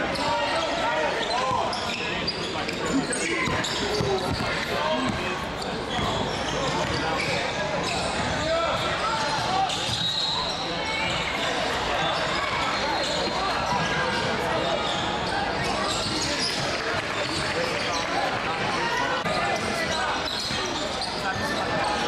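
Live game sound of a basketball game in a gym: the ball bouncing on the hardwood court amid players and spectators talking and calling out, all echoing in the large hall.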